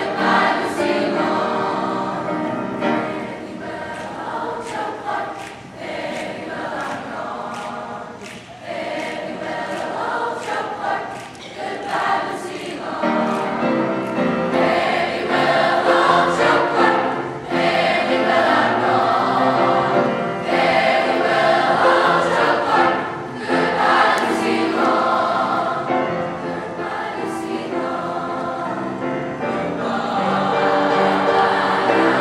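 Large mixed youth choir singing in parts, swelling louder about halfway through.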